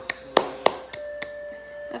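A baby's hands clapping, a few soft claps in the first second, followed by a steady held tone for about a second.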